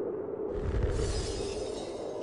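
Sound-effect hit for a title card: about half a second in, a sudden burst of noise with a deep boom underneath and a bright hiss on top, dying away slowly. Before it, a held musical note fades out.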